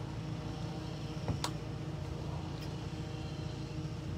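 A steady low mechanical hum with a sharp click about one and a half seconds in.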